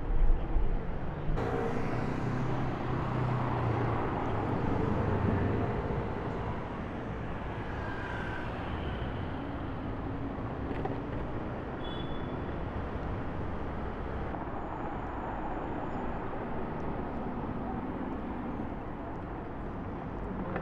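Street traffic: car engines running at low speed over tyre and road noise. The sound is loudest in the first few seconds, changes suddenly just over a second in, and then settles to a steady level.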